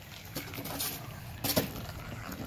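Glass marbles rolling down a two-lane plastic Hot Wheels track, a low rolling rumble with a few sharp clicks, the loudest about one and a half seconds in.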